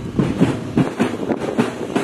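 Boots of a column of marching soldiers striking dirt in step, a crunching beat of about two to three steps a second.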